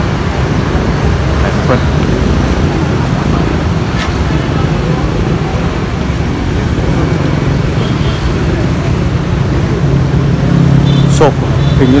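Steady low rumble of road traffic and vehicle engines, with one engine growing louder near the end.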